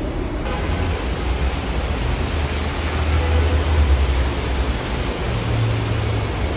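Steady rushing of water from an indoor water feature, with a low rumble underneath; the hiss becomes fuller about half a second in.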